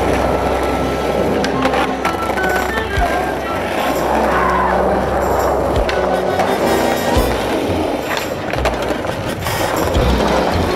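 Background music playing over skateboard sounds: wheels rolling on concrete, with a few sharp board knocks.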